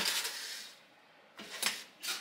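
A paper air fryer liner rustling as it is pressed down into the basket and fading out. After a short pause come a few quick clicks from metal kitchen tongs.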